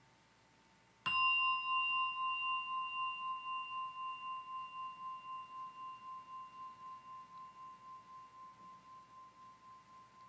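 A meditation bell struck once about a second in, then ringing on with a clear, wavering tone that slowly fades away.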